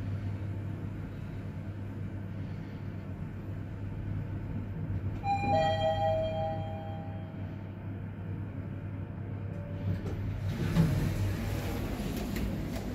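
Mitsubishi NEXIEZ-MR traction elevator car travelling down with a steady low hum. About five seconds in its arrival chime rings, two notes, the second slightly lower, dying away over about two seconds. Near the end a louder rush of noise sets in.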